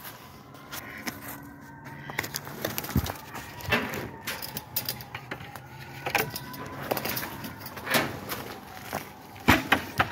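Footsteps crunching on snowy ground, with irregular sharp clicks and rustles, over a faint steady hum.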